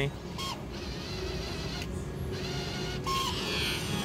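Video slot machine sounding short electronic beeps and a brighter run of chimes as a game loads after money is fed in, over a constant murmur of casino voices.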